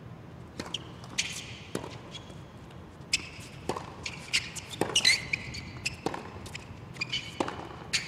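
Tennis rally on a hard court: a string of sharp racket strikes and ball bounces, with sneakers squeaking on the court surface, and no crowd noise.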